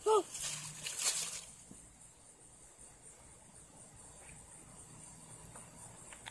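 Faint, steady, high-pitched insect trilling in the garden, with a brief soft rustle in the first second or so.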